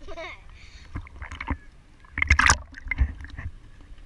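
Pool water splashing and sloshing around a GoPro camera held at the surface, with short splashes about a second in and a louder one past the middle over a low churning rumble. A brief voice is heard at the start.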